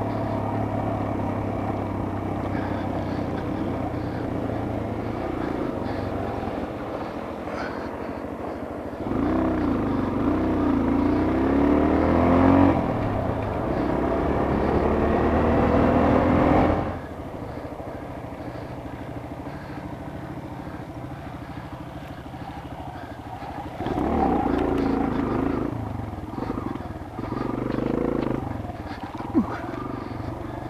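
Dirt bike engine running under the rider. It revs up from about nine seconds in, drops in pitch at a gear change near thirteen seconds and climbs again, then falls back to a quieter steady run near seventeen seconds. Two shorter bursts of throttle come around twenty-four and twenty-eight seconds.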